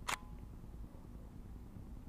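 Nikon D90 digital SLR's mirror and shutter giving a single short clack as a two-second manual exposure begins.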